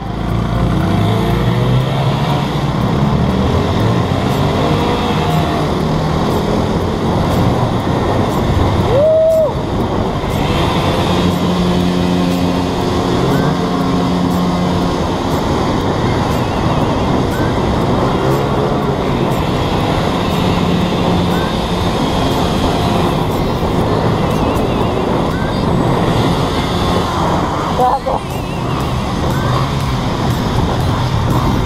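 Small single-cylinder motorcycle engines, a Suzuki Smash 115 underbone among them, running at speed through a road tunnel, their drone rising and falling as the riders work the throttle, with wind rush on the helmet microphone. A short higher note sounds about nine seconds in.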